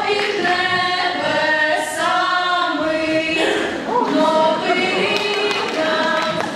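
A small group of voices singing together in long held notes.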